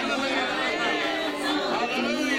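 Several people praying aloud at once, their voices overlapping in a large room.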